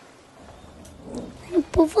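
Faint steady background hiss, then near the end a child's voice starts to speak.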